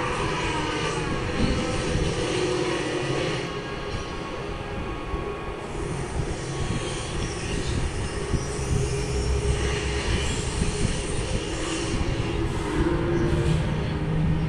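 A steady mechanical drone with a low rumble that holds at an even level throughout.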